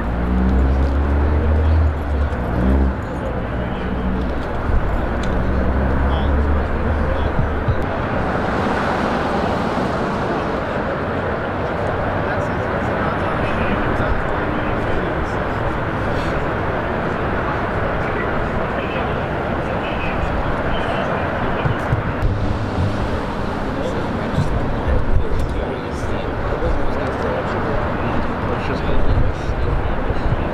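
Busy city street sound: a vehicle engine running with a steady low hum for the first several seconds, then continuous traffic noise that swells about eight seconds in, with indistinct voices in the background.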